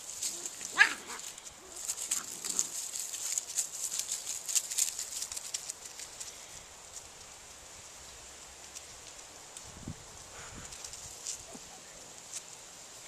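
A puppy gives a short, high yelp about a second in. Then, for a few seconds, there is light clicking and scuffling as the puppies and their mother play-wrestle on concrete.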